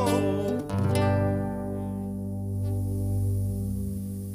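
A folk band's final chord on acoustic guitars and other plucked strings, struck just under a second in and left to ring and fade out, over a steady low tone: the end of the song.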